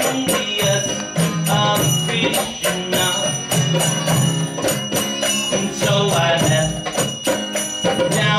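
Live song with a man singing over his own strummed acoustic guitar and a jingling hand percussion keeping a steady beat.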